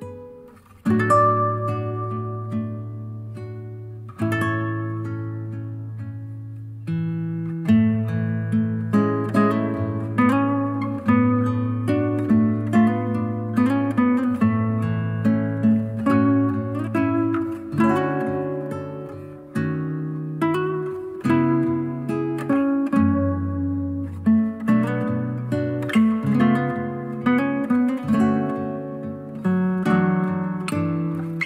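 Solo acoustic guitar piece played back through a pair of hi-fi bookshelf speakers: a fingerpicked melody over low ringing bass notes, growing busier after the first several seconds.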